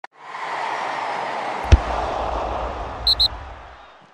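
Sound effects of an animated logo sting: a swelling whoosh of noise, a single sharp hit with a deep boom after it a little before halfway, then two quick high blips near the end as it fades out.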